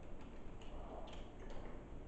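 A few faint, light ticks, about two a second, over a quiet room.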